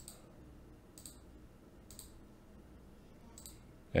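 Computer mouse clicking: four quiet single clicks, about a second apart.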